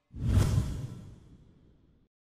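A single whoosh sound effect that swells in quickly, peaks about half a second in and fades away over the next second.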